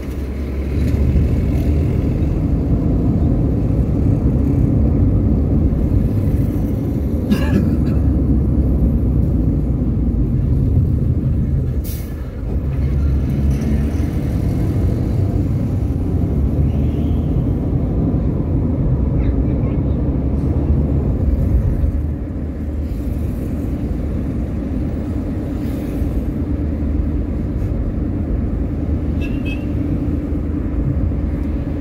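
Steady low rumble of a car driving along a city avenue, heard from inside the cabin, with a couple of brief knocks about seven and twelve seconds in.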